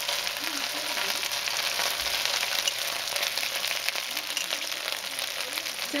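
Pork spare ribs sizzling in hot oil in a pot on medium-high heat: a steady, crackly frying sound as the meat browns.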